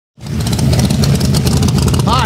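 Car engine running with a steady, deep low rumble, cutting in just after the start.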